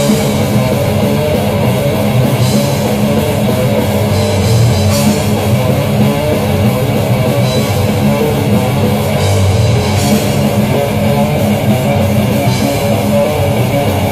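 Live heavy metal band playing loudly: electric guitars and a drum kit, dense and continuous, with a riff that repeats about every two and a half seconds.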